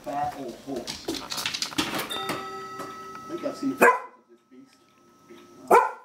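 Springer spaniel giving two single alert barks at the window, about two seconds apart, the first just under four seconds in.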